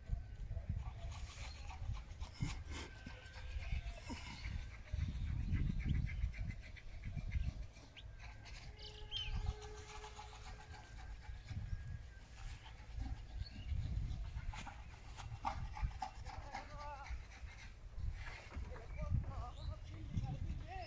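Open-air field ambience: wind gusting on the microphone, with faint distant voices and animal calls, and a brief steady tone about nine seconds in.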